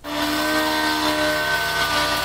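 Airbrush spraying: a steady hiss of air with a faint whistling tone, starting suddenly as the trigger is pressed.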